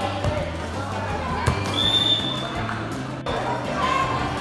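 A volleyball being struck by hand, with one sharp slap about a second and a half in, over background music and crowd voices.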